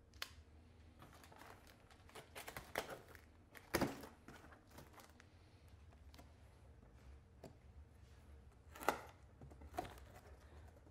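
Faint scraping and tapping as packing tape on a cardboard box is slit open with a knife, with a few sharper knocks about four seconds in and again near the end.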